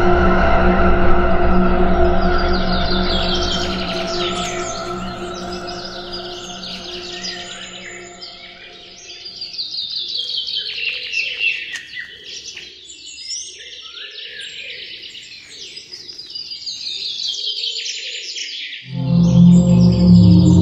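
Forest birdsong: a fast run of high notes falling in pitch, repeated every few seconds, with lower calls about once a second in the middle. A held music chord fades out over the first several seconds, and loud music cuts back in just before the end.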